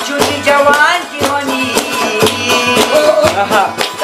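Khowar folk song: a man singing over a steady frame-drum beat, with a Chitrali sitar, a long-necked plucked lute, playing along.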